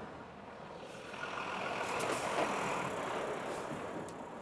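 Box truck driving slowly past close by on a cobbled street, its engine and tyres growing louder from about a second in as it comes alongside.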